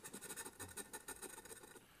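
Faint scratching of a scratch-off lottery ticket's coating with a handheld scratcher tool: a light, uneven patter of small scrapes that dies away near the end.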